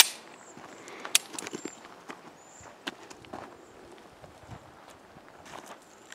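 A single sharp click at the very start, then scattered light footsteps crunching on dry dirt and splintered wood.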